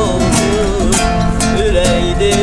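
Three acoustic guitars strummed together in a steady rhythm while a man sings a wavering melody over them.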